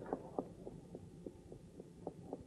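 Soft, evenly spaced taps, about three or four a second, over a faint low hum.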